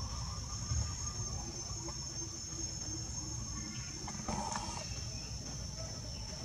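Steady high-pitched drone of insects, over a low rumble, with a short higher sound a little past four seconds.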